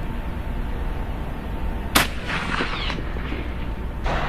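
A single 12-gauge shotgun shot firing a slug, one sharp report about two seconds in.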